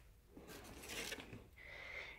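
Faint rustling and handling noises, loudest about a second in.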